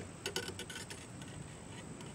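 A few faint clicks and light taps in the first half second as the twisted copper-wire antenna element is handled, then only a faint steady background hiss.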